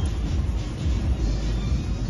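A steady low rumble of glass-studio equipment, with music playing in the background.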